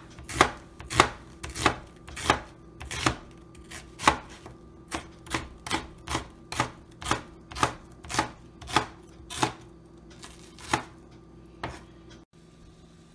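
Chef's knife slicing a red onion on a plastic cutting board: a regular series of sharp knife strikes on the board, nearly two a second, with a short pause before the last two strikes.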